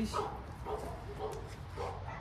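A dog giving a few short, soft whines.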